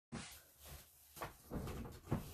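A few soft knocks and clatters, like things being handled or set down close to the microphone, growing into a busier run of knocks near the end.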